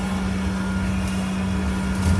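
Double-decker bus running on the move, heard from the upper deck: a steady low rumble with a constant drone.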